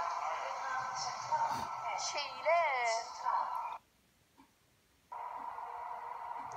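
Voices with gliding pitch over a steady hum, broken by about a second of dead silence past the middle.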